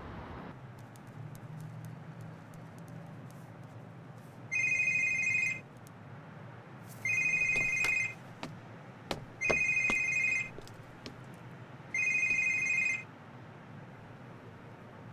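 A mobile phone ringing: four electronic trilling rings, each about a second long and about two and a half seconds apart.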